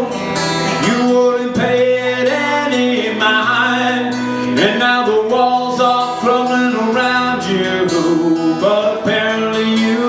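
Live acoustic guitar strummed through a song, with a man singing over it.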